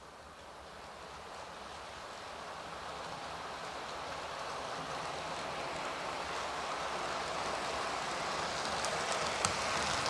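OO gauge model diesel locomotive and coaches running on track toward the camera: a steady rolling whirr that grows louder throughout as the train approaches, with a few clicks near the end.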